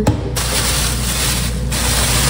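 A click, then a steady loud hiss that starts suddenly about a third of a second in and keeps going.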